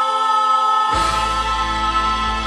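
Male voices holding one long sung note in harmony through microphones, joined about a second in by a backing track with a deep bass.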